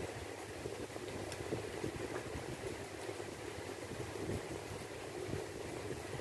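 Fingers mixing rice and curry on a steel plate: soft, wet squishing and small scattered clicks over a steady background hum.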